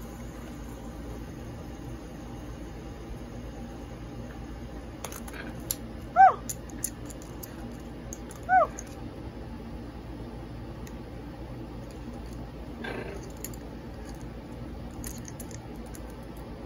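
A macaw gives two short chirping calls, each rising then falling in pitch, about two and a half seconds apart, over a faint steady room hum. A few faint clicks come just before the first call.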